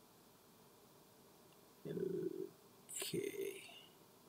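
A man's voice making two short wordless sounds over quiet room tone: a brief hum about two seconds in, then a short mumble with breath near the end.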